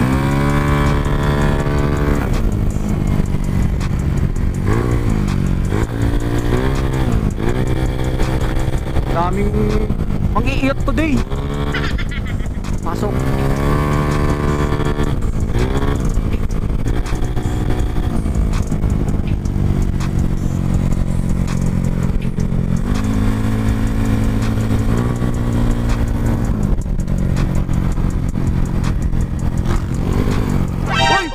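Yamaha Mio scooter's single-cylinder engine running under way, its pitch rising and falling again and again with the throttle, over steady wind and road noise.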